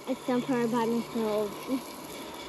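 Speech: a child's voice talking briefly in short phrases, words not made out, over a faint hiss of a garden hose spray nozzle watering soil.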